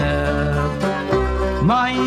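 Irish folk music recording: a held melody note over plucked-string accompaniment, with a new phrase starting near the end.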